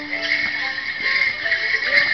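Live folk dance tune for Morris dancing, played as held melody notes, with the jingle of bell pads on the dancers' shins as they step.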